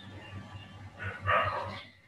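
A single animal call, like a dog's bark, about a second in and lasting under a second, over a low steady hum.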